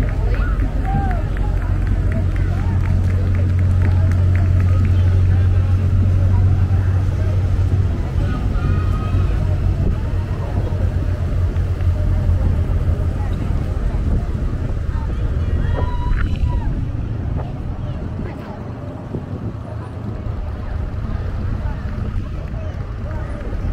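Parade street sound: crowd chatter and vehicles going by. A low engine rumble is strong through the first several seconds and then fades.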